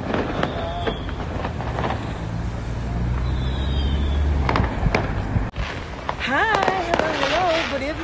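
Scattered firecracker bangs during Diwali fireworks, a few sharp pops in the first two seconds and a louder cluster near the middle, over a low rumble. A voice comes in near the end.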